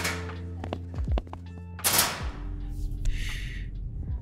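Sound effects of a metal school locker door shutting: a thunk right at the start and a louder bang a little under two seconds in, over soft lofi background music.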